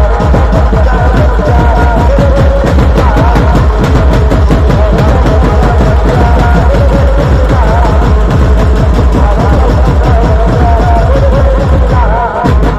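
Loud live banjo-band music: an amplified melody line wavering over dense, fast beating on large bass drums, played without a break.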